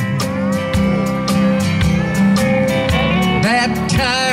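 Live country band playing an instrumental passage: strummed acoustic-electric guitar over a steady drum beat.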